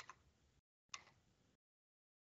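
Near silence with two faint clicks about a second apart, the audio dropping to dead silence between and after them.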